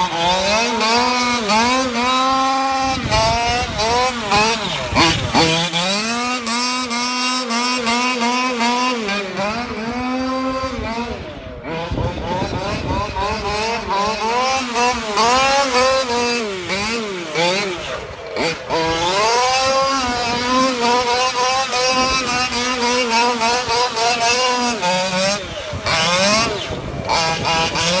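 The 32cc two-stroke engine of a 1/5-scale Losi Mini WRC RC car, fully modified and fitted with a Bartolone tuned pipe, revving up and down over and over as the car is driven. It drops briefly off throttle about eleven and eighteen seconds in before climbing again.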